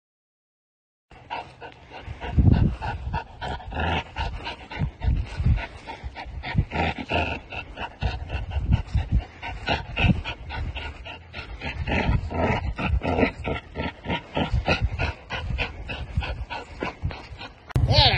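Dog panting hard while playing tug with a toy, with rough handling bumps and rustle. It starts abruptly after a second of silence.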